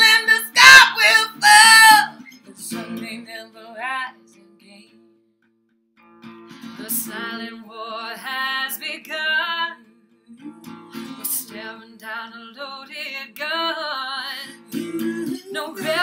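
Two female voices singing a soul song in harmony over a strummed acoustic guitar. The first lines are loud and belted. Then the music breaks off briefly, nearly silent for about a second and a half, before quieter singing and guitar resume.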